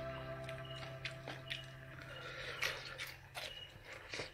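A person chewing a mouthful of golden apple snail eggs stewed with banana, with soft, scattered gritty crunching.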